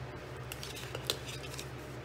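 Green cardstock being creased along its score lines and folded by hand, giving a few short, crisp paper crackles and rubs around the middle.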